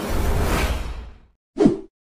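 Editing sound effects: a swoosh that swells and fades over about a second, then a short pop with a falling pitch near the end.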